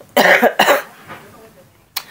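A woman coughing, two quick coughs in one short fit, from a bout of flu.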